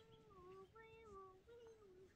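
A child's faint singsong voice: three drawn-out notes, each sliding down a little in pitch.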